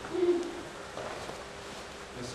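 A single short, low 'hoo'-like vocal sound from a person, lasting about a third of a second near the start, over faint hall room noise.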